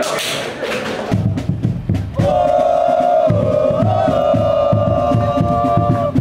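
A noisy burst of voices and hand slaps, then a steady drumbeat starts about a second in. A group of supporters joins with a long, held chant over the drums.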